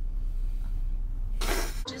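One short cough near the end, over the steady low rumble of a car cabin.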